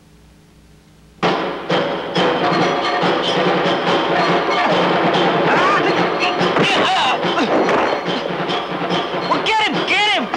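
A low hum for about a second, then loud film-soundtrack music with percussion cuts in suddenly and runs on, laid over kung fu fight sound effects: repeated punch and kick impacts, with shouted cries near the end.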